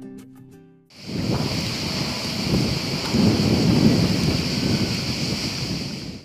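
Acoustic guitar music fades out, then about a second in a steady rushing noise with a low rumble begins and holds until the end.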